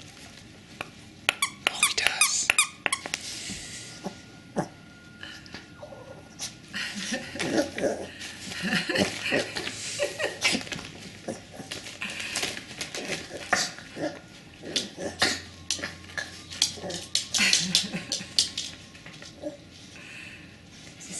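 Squeaker in a plush cow dog toy squeaking several times as a Chihuahua chews and carries it, with scattered rustles and clicks in between.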